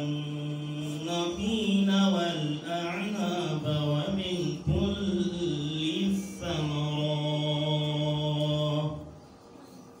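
A man reciting the Quran in a melodic chant into a microphone: one long phrase with drawn-out held notes that ends about nine seconds in.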